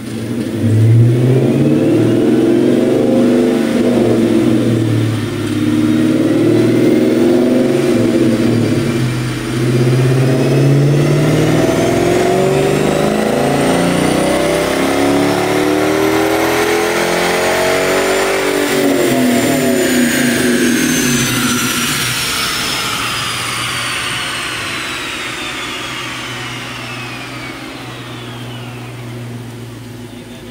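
Dodge Challenger R/T's 5.7 Hemi V8, breathing through a cold air intake and Flowmaster Super 44 mufflers, making a wide-open-throttle dyno pull: the engine note dips briefly twice in the first ten seconds as it shifts up, then climbs in one long pull. A high whine rises with speed until about two-thirds through, then the throttle closes and the engine and whine fall away together as the rollers coast down.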